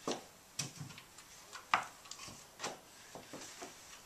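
Thick reinforced pond liner (Dura-Skrim) rustling and crinkling as it is smoothed and lined up along the trough's plywood edge, in several short crackles, the loudest a little before the middle.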